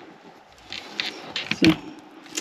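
Broken metal closet door handle and latch being worked by hand, giving a few light clicks and rattles about a second in.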